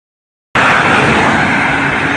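Road traffic noise, with a car driving past close by. It starts abruptly about half a second in, after silence, and stays loud and steady.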